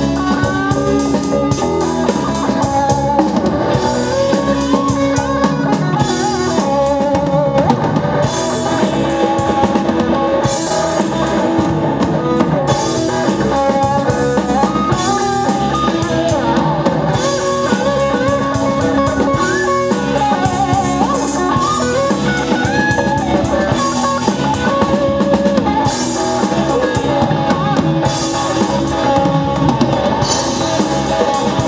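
Live rock band playing an instrumental passage: electric guitar to the fore over a drum kit, played steadily and loudly throughout.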